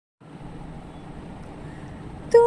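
A steady low rumble of background noise.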